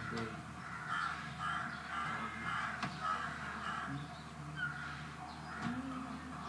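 Crows cawing again and again, harsh calls about half a second each, over a low murmur of voices.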